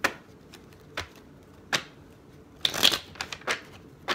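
Miniature tarot deck being shuffled by hand: separate sharp card snaps about once a second, then a quick dense run of card noise followed by a few more snaps near the end.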